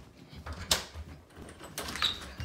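Interior door and its knob being handled: a sharp click or knock about two-thirds of a second in and another near the end, with soft low bumps between them.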